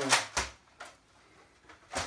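The end of a boy's spoken phrase, then a single sharp click or knock about half a second in, followed by a couple of faint ticks in an otherwise quiet room.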